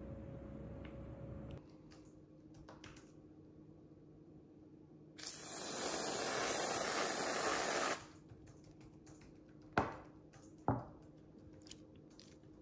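Aerosol can of whipped dairy topping spraying in one steady burst of about three seconds, starting about five seconds in and cutting off sharply. Two sharp knocks about a second apart follow near the end.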